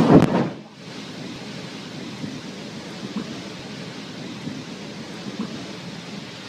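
Underwater explosion at sea: a short, heavy boom at the very start that dies away within about half a second, then a steady rushing noise while the water column rises.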